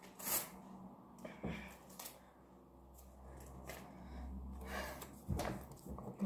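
Faint handling sounds as a paper slip is pulled off a wall and carried over: a few soft taps and rustles early on, then a low rumble building about three seconds in, with a sharper click near the end.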